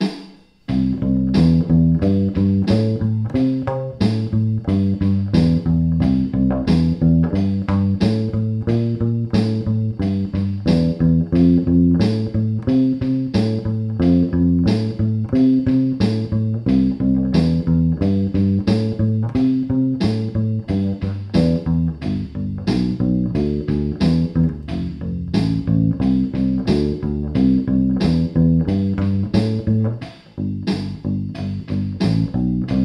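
Bass ukulele playing an even, straight-feel bass line over a drum machine's straight rock beat, with regular cymbal ticks keeping time.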